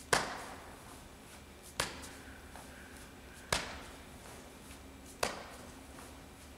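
Kettlebell swings: four sharp bursts, one at the top of each swing, in an even rhythm about every second and a half to two seconds.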